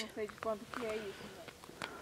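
A faint, indistinct voice murmuring briefly in the first second, with soft crunching of boots walking on snow over sea ice.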